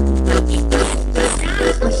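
Dance remix music played loud through a large outdoor carnival sound system. A heavy, steady bass runs under a pitched synth tone that slowly falls during the first second, followed by short percussive hits.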